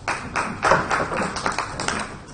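Scattered applause from a small audience: a run of separate claps, about five a second.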